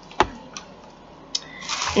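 A single sharp knock about a quarter of a second in, as a small plastic spray bottle is set down on a tabletop, followed by two faint clicks of handling.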